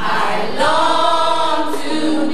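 Youth gospel choir singing, the voices swelling into a held chord about half a second in.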